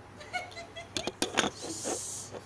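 A cloth robe rustling as it brushes past the phone, with a few sharp clicks and knocks from handling. A short high pitched sound comes about a third of a second in, and a hiss near the end.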